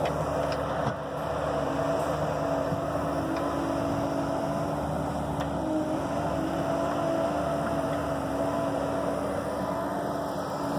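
Bobcat E45 mini excavator's diesel engine and hydraulics running steadily under load as the bucket works dirt, with a steady hum whose pitch wavers a little a few seconds in.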